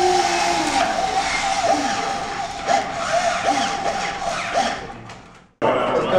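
Small electric drive motors of a wheeled robot running with a steady whine as it drives off. The whine fades and then cuts off abruptly near the end.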